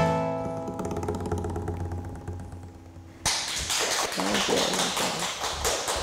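Nylon-string classical guitar's final chord ringing out and fading. About three seconds in, clapping starts suddenly, with a voice briefly over it.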